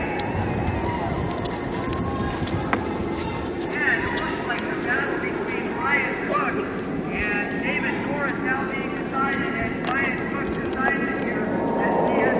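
Indistinct, distant voice of a race announcer over a public-address loudspeaker, in fragments, over a steady outdoor background hiss.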